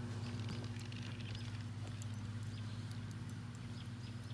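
A steady low hum, like a machine running, with faint scattered ticks and rustles over it.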